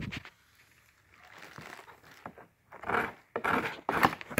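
Cardboard shipping box and bubble wrap being handled: rustling and crinkling in scattered bursts, louder in the last second or so, with a sharp knock near the end.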